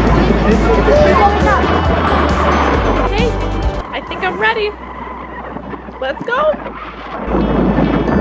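Several people's voices chattering at once over a steady low rumble, quieter in the middle with only a few voices, then louder noise again near the end.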